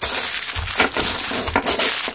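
Loud, dense crackling and rattling handling noise right at the microphone. It starts abruptly and carries many small knocks.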